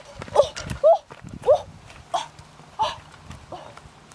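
A woman's short yelping cries, repeated about six times and growing fainter.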